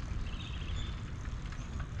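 Low, uneven wind rumble on the microphone, with a faint high sound about half a second in.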